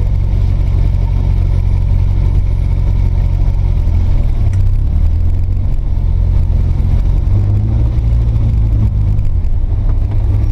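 Small van's engine droning inside the cabin while driving, a deep steady note whose pitch shifts a few times as the speed changes.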